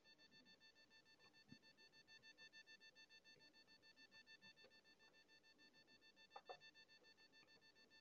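Near silence: faint room tone with a thin, steady high whine, and two faint clicks late on.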